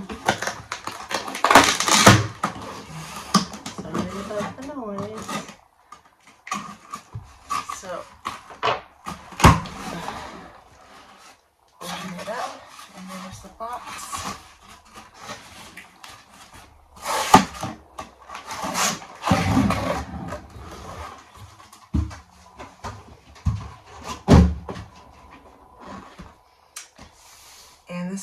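A craft knife slitting packing tape on a cardboard shipping box, then the tape peeled off and the box opened and handled: an irregular run of scrapes, rips, rustles and knocks with short pauses between them.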